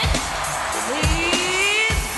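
Wrestler's funk entrance theme played through the arena PA: heavy bass drum beats under a drawn-out vocal line that slowly rises in pitch.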